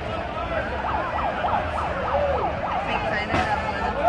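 A siren in a rapid yelp: a wail sweeping up and down about five times a second for about two seconds, then sliding down in pitch. Crowd chatter runs underneath.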